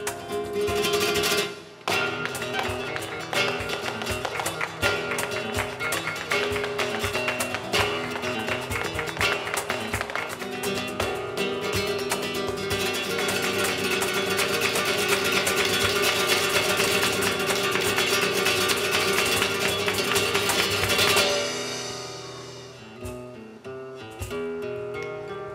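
Live flamenco music led by acoustic flamenco guitar, with fast, sharp percussive strokes packed through it. It builds to a dense, steady passage, stops abruptly about 21 seconds in, and rings away.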